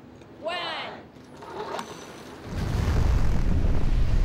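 Whitewater rushing below a concrete dam: a loud, steady, deep rush that starts suddenly about two and a half seconds in. Before it comes a short voice-like call.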